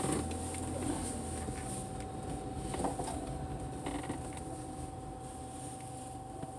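Inside a car moving slowly: a low engine and road rumble, strongest in the first second and a half, with a steady faint hum and a few faint creaks and clicks from the cabin.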